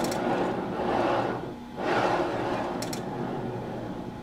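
A 12 mm drawn steel wire bar sliding through the rollers of an ultrasonic transducer holder, rubbing and scraping in two strokes, the second starting about two seconds in. Two light clicks from the flaw-alarm relay, one at the start and one about three seconds in.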